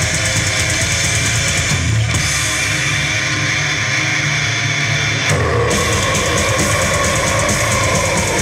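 Live metal band playing loud, with electric guitars, bass guitar and a drum kit, and a short break in the cymbals a little past five seconds.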